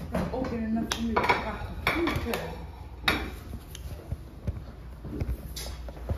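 Dinner plates and cutlery clinking and knocking, a scatter of separate clinks, with brief voices in the background.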